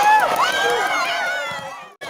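Spectators shouting and cheering, many high voices overlapping, dying away over the second half and cutting off abruptly near the end.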